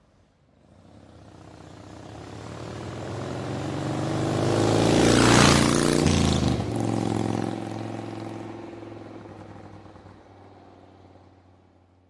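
Vehicle engine pass-by sound effect: it swells up from nothing, is loudest about five and a half seconds in as its pitch shifts in passing, then fades away over a low steady hum.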